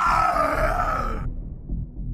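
A man's drawn-out, strained cry of pain ("ahhhgggh"), a voiced death scream as he is stabbed in the throat, cutting off abruptly just over a second in. A low pulsing beat runs underneath.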